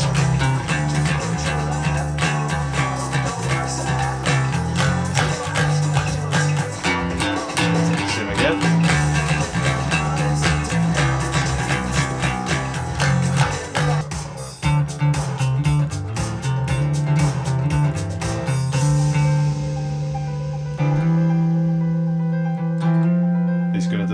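Electric bass played along to a rough demo track with a dance beat and rough vocals, the bass line being worked out by ear for the first time. About three-quarters of the way through, the beat drops out and held bass notes carry on.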